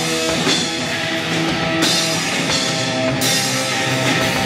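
A live rock band playing an instrumental passage: distorted electric guitar over a drum kit, with cymbal crashes about two and three seconds in.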